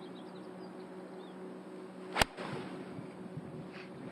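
Golf iron striking the ball on a fairway approach shot: one sharp, crisp click a little over two seconds in, over a quiet outdoor background with faint bird chirps in the first second.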